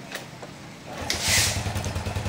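Small single-cylinder motorcycle engine kick-started: about a second in it fires with a short hiss and settles at once into a steady, even idle, the sign that the newly fitted carburetor's idle circuit is working well.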